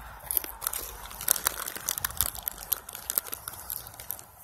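A young goat crunching in-shell peanuts close up, a quick irregular run of crunches, with the plastic peanut bag crinkling.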